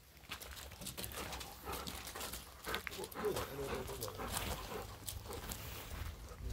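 Golden retriever's breathing and small vocal noises close to the microphone, over scattered clicks and crunches on gravel.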